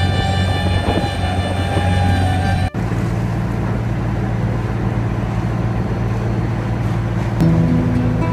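Background music with sustained string tones, cut off abruptly about two and a half seconds in. It gives way to the steady low drone of a fishing boat's engine under a wash of noise, with some musical tones returning near the end.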